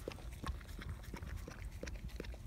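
A dog licking whipped cream from a small paper cup held to its mouth: faint, wet lapping clicks, about three a second, over a low rumble.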